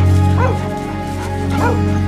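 Dog barking twice, about a second apart, while driving a mob of cattle, over steady background music.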